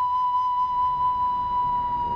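Background music: one long high note held steady, sagging slightly in pitch near the end.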